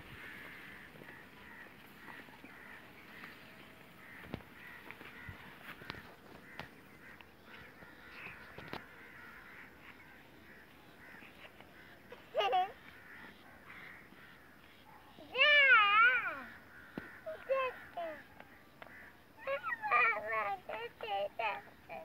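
A faint outdoor background with light scattered footsteps and rustling. From about halfway through, a girl makes a few high, wavering calls: one short rising call, then a longer warbling one, then a quick run of short ones near the end.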